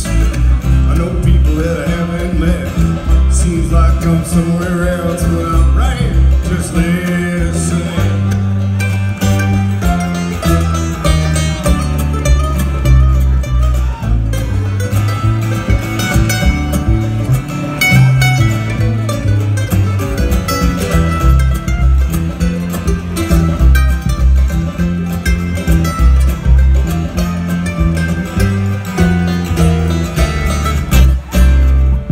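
Live bluegrass string band playing, amplified through a theatre PA: mandolin, acoustic guitar and upright bass, with a steady bass line under the picking.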